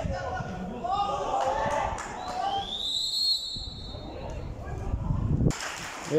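Distant shouting voices on the pitch over a low rumble, then a referee's whistle: one short blast rising in pitch about two and a half seconds in, stopping play for a foul.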